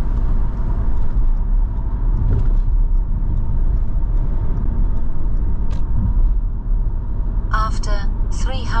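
Steady low road and engine rumble of a car driving along, heard from inside the cabin.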